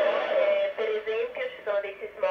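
A voice received over the International Space Station's FM downlink on 145.800 MHz, played through a Yaesu transceiver's loudspeaker. It sounds thin and narrow-band, like radio audio.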